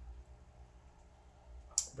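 Quiet room tone in a pause between words, broken near the end by one short, sharp mouth click just before speech resumes.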